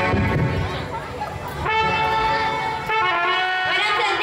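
Electronic keyboard playing held notes with a brass-like tone, starting just under halfway in. Before that, a low rumble of a microphone being handled.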